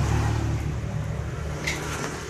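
An engine running nearby: a steady low hum with a rushing noise over it.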